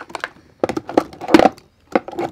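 Lipstick tubes clicking and knocking against one another and the plastic grid dividers of a drawer organiser as they are moved around by hand: a string of short clicks, the loudest knock a little past halfway.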